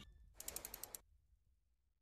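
Faint run of about seven quick ratchet-like ticks, some ten a second, from a logo-intro sound effect, stopping about a second in; then near silence.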